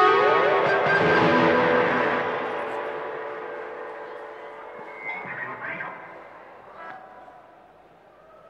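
A rock band's final chord ringing out on electric guitars with echo effects, with a rising slide just after the start, then slowly fading away over several seconds.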